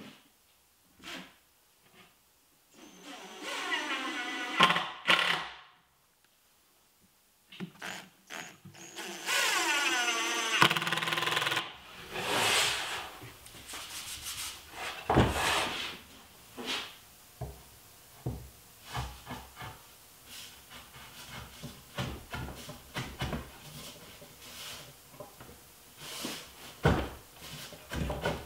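Cordless drill driving screws into a plywood drawer box, two runs of about two seconds each, the motor whine shifting in pitch as the screw draws in. Scattered knocks and clunks of the box being handled and moved on the bench follow.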